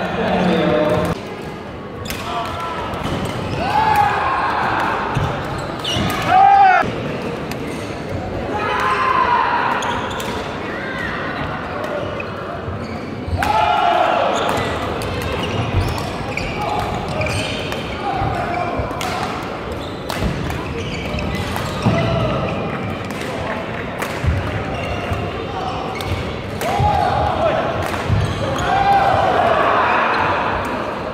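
Badminton doubles rally in a large hall: the shuttlecock is struck by rackets again and again in sharp clicks, and sneakers squeak on the court floor, with the hall's echo.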